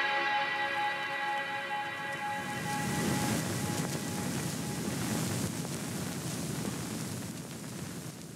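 Background music with held tones fading out over the first three seconds, then a soft rustling of clothing as a knit hat and scarf are pulled on, dying away near the end.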